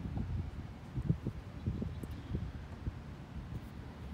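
Low, uneven wind rumble on the microphone with a few faint soft thumps.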